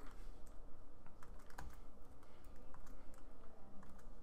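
Typing on a computer keyboard: a run of irregular keystroke clicks as code is entered.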